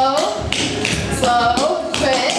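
Clogging shoe taps striking a hard floor in quick clusters, a dancer stepping out syncopated doubles.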